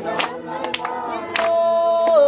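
A congregation of men, women and children singing a hymn in Swahili unaccompanied, several voices together, with a note held near the end. Three sharp hand claps about half a second apart keep the beat.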